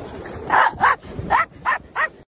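Small white fluffy dog barking about five times in quick succession.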